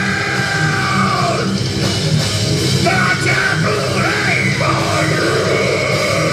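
Heavy metal band playing live at full volume: distorted electric guitar, bass guitar and drums, with a shouted vocal.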